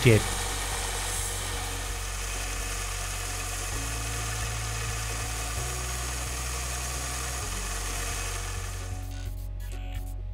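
Belt sander running steadily as a metal jaw blank is ground against the belt, under soft background music with slow low notes; the grinding noise drops away about nine seconds in, leaving the music.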